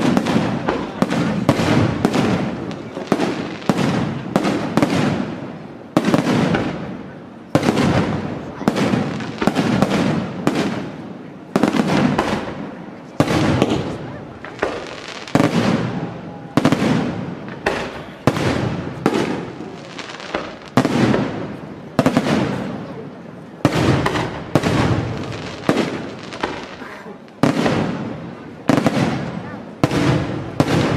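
Aerial firework shells bursting in rapid succession, a sharp report about once or twice a second, each one dying away before the next.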